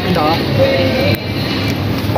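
A person's voice making short wordless sounds, one drawn out for about half a second, over a steady low hum.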